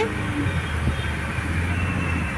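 Car driving, heard from inside the cabin: a steady low hum of engine and road noise.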